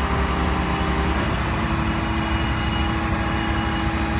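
An engine running steadily with a loud low drone and a few steady hum tones, which shift slightly in pitch a little over a second in.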